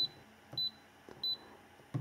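Key-press beeps from a Launch CRP123 handheld scan tool as its menu buttons are pressed: short, high beeps about two-thirds of a second apart, three in all.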